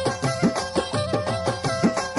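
Kachchhi kafi, Sufi devotional folk music: a held drone note under a melody, driven by a quick, even beat of about five strokes a second.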